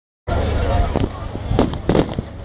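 Aerial firework shells (bombe da tiro) bursting: three sharp bangs about a second in, around a second and a half, and just before the end, over a steady low rumble.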